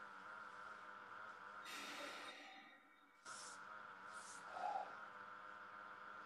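Faint breaths, a few short exhalations, over a steady electrical hum from a video-call microphone. The background cuts out briefly about two and a half seconds in and returns.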